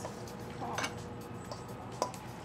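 Quiet room tone with faint clicks and handling noise from a hand mixing raw shrimp in a stainless steel bowl, with a couple of light ticks about a second in and again later.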